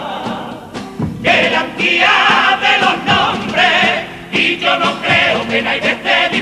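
An all-male Cádiz carnival comparsa choir singing a pasodoble in harmony, accompanied by Spanish guitars and drums. The singing dips briefly just before a second in, then comes back louder.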